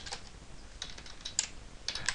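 Computer keyboard keystrokes: about half a dozen separate taps, spaced out rather than fast typing.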